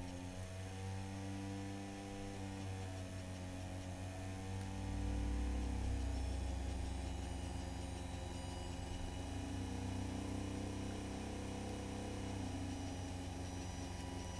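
Small DC motors spinning the laser spirograph's mirrors: a steady hum with several whining tones that drift up and down in pitch as the motor speeds change. The low hum grows louder about five seconds in.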